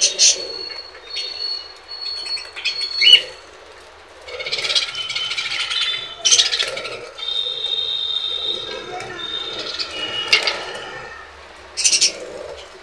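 Budgerigars chirping, chattering and squawking at a seed dish, with wings flapping as birds fly in and land.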